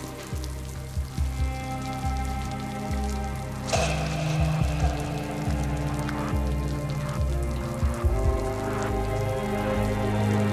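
Heavy falling water spattering on a wet floor like a downpour, under a film score of long, held low notes; the sound swells briefly about four seconds in.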